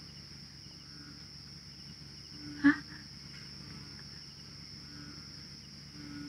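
Steady high-pitched chirring of crickets, a night-time insect chorus. A brief, louder human voice sound breaks in once, about two and a half seconds in.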